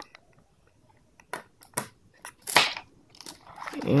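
Cardboard box and its inner packaging being handled: after a near-silent second, a few short scrapes and clicks, the loudest a brief scrape about two and a half seconds in.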